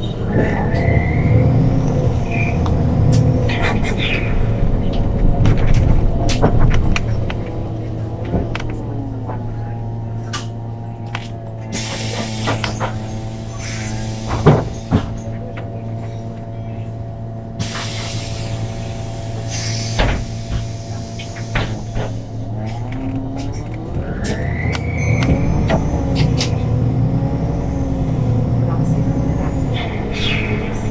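Inside a MAN NL313F CNG city bus: the natural-gas engine and ZF Ecolife automatic gearbox run with a rising whine as the bus pulls away, then ease off to a steady idle. While idling there are two bursts of air hiss. The bus pulls away again with another rising whine near the end.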